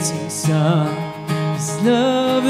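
A man singing a worship song while strumming an acoustic guitar.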